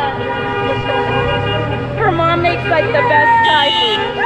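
Car horns honking in long, held blasts of several overlapping pitches as cars roll past, with people's voices calling out over them.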